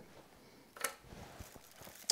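Faint handling sounds of sword fittings being moved and a small piece being set down on tissue paper, with one short sharp rustle or click a little under a second in.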